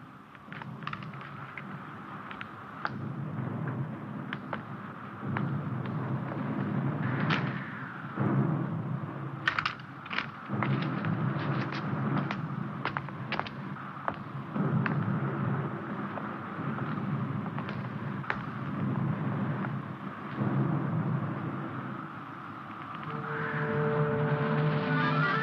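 Film battle soundtrack: scattered single gunshots at irregular intervals over a continuous rumble. Music comes in near the end.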